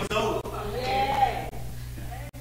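A man's voice preaching in a drawn-out, half-sung delivery, with one long held note that rises and falls in the middle.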